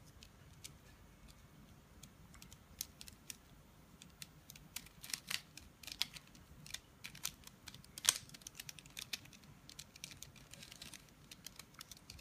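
Plastic mirror cube being turned by hand: quick, irregular clicks and clacks as its layers are twisted, sparse at first and more frequent from a couple of seconds in, with the loudest click about eight seconds in.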